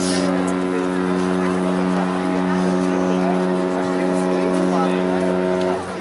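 The MSC Seashore cruise ship's horn sounding one long, steady, deep blast as the ship departs, cutting off suddenly near the end.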